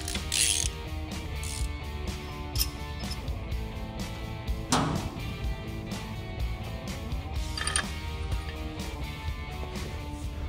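Hand ratchet clicking in quick repeated strokes as a bolt is run in on a front axle knuckle, with one stronger knock about halfway through, over a background music bed.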